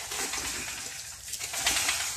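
A dove cooing faintly over a steady high hiss.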